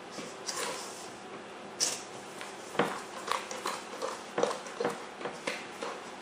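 A utensil stirring dry cake ingredients (flour, sugar, cocoa powder) by hand in a stainless steel mixing bowl: soft scraping with irregular light knocks against the metal.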